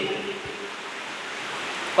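Steady, even hiss of background noise, with the end of a man's voice trailing off in the first half second.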